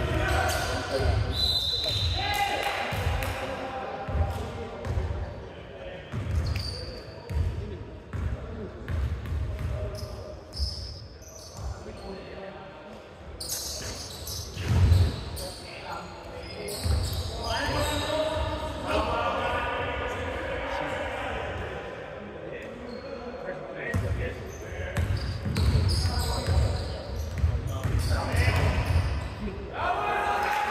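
Basketball bouncing on a wooden court floor, with repeated thuds as it is dribbled and passed through the play.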